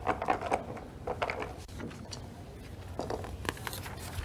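Paper rustling and small handling clicks at a table, as a folded slip is drawn from a box and opened.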